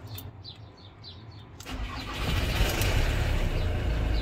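Ford Transit's 2.4 litre Duratorq TDDI turbo diesel starting up a little under halfway through and settling into a steady idle. This is the first start after an oil cooler gasket change, with oil pressure already built up by cranking. Faint bird chirps come before it.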